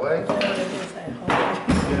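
Steel hammer driving two-inch finishing nails into pine blocks, with a couple of sharp blows in the second half, the last the loudest.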